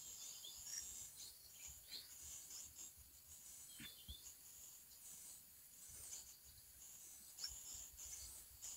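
Near silence: faint outdoor background with a thin, steady high-pitched drone and a few faint, short chirps.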